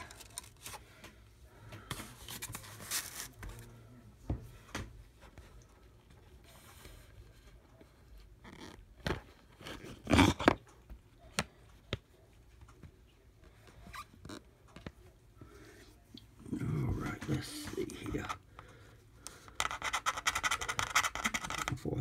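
A paper lottery scratch-off ticket and a clipboard's metal clip being handled: quiet rustles and scattered clicks, with one sharp click about ten seconds in. Near the end a coin starts scratching off the ticket's coating in rapid strokes.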